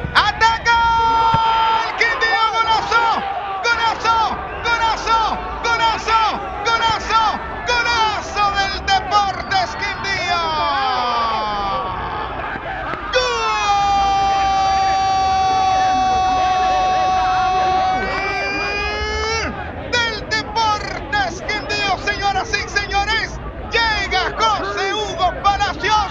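Spanish-language football commentator shouting excitedly over a goal, with one long held cry of about six seconds midway, over a low crowd hubbub.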